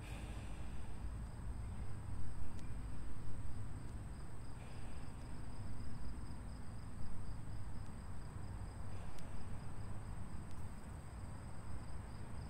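Insects trilling steadily at a high pitch, with a low, uneven wind rumble on the microphone. Faint breaths through the mouth come and go during a slow breathing exercise.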